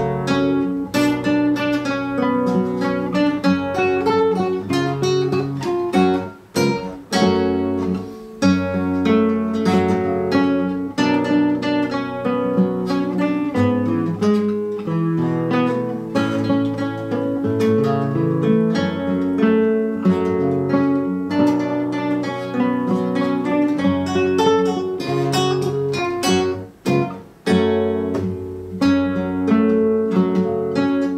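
Nylon-string classical guitar played fingerstyle, a plucked melody over held bass notes, with two brief pauses.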